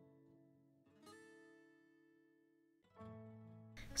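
Faint background music: acoustic guitar, two plucked chords about two seconds apart, each ringing and fading away.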